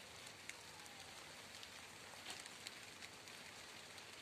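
Faint, steady hiss of light rain, with a few small scattered ticks.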